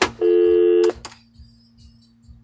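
Nortel Norstar desk telephone: a button click, then a dial tone of two steady low tones from the phone's speaker for under a second, cut off abruptly with another click. It is the sign that the set and the phone system are working again.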